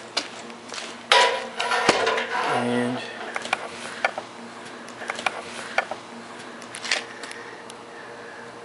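Metal tools and a crushed battery cell handled on a steel anvil and workbench: a loud clatter about a second in with a thump in the middle of it, then scattered light clicks and knocks.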